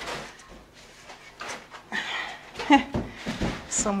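Plastic wrap around a resin printer crinkling and rustling as it is handled, with a few light knocks and a short vocal sound near the end.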